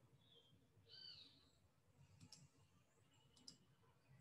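Near silence: faint room tone with a high chirp about a second in and a few soft clicks later on.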